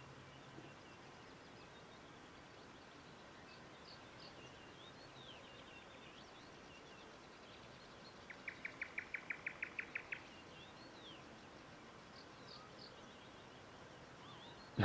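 Faint outdoor ambience with small birds chirping here and there. About eight seconds in, a bird gives a quick trill of about a dozen even notes, roughly six a second, the loudest sound.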